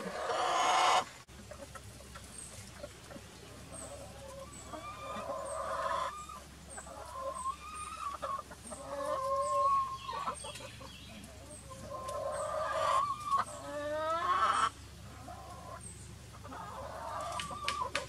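Backyard hens clucking and calling on and off, several calls drawn out and sliding up and down in pitch, the loudest just before the middle and again a few seconds before the end.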